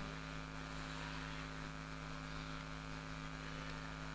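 Faint, steady electrical hum from a live stage PA sound system, held at one pitch with no other sound over it.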